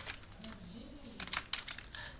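Keystrokes on a computer keyboard: a single click at the start, then a quick run of several clicks in the second half as a word is typed.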